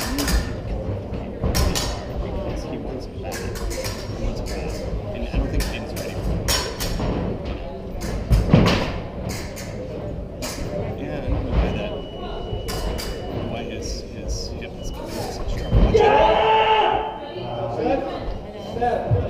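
Fencing bout on a metal piste: many sharp footwork stamps and thuds on the metal strip and clicks of blades meeting, with a loud strike about halfway through. A shout or raised voice comes near the end.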